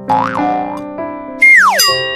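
Background piano music with cartoon sound effects laid over it: a short wobbling boing near the start, then a loud whistle sliding steeply down in pitch about one and a half seconds in.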